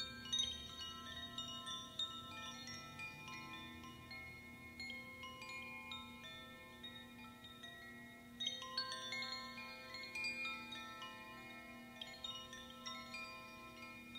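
A pair of hand-held bamboo tube chimes (Koshi-style) shaken, giving a continuous cascade of overlapping chime notes at many pitches. The notes swell about 8 seconds in and again near the end, over a steady low drone.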